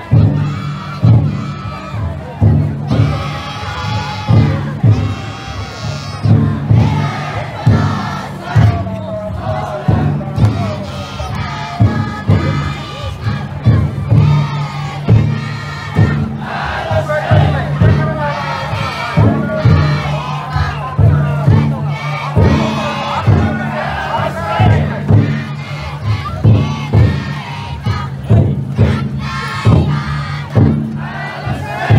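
Taiko drum inside a futon daiko festival float beaten in a steady beat, under the loud rhythmic shouting of the crowd of bearers carrying it.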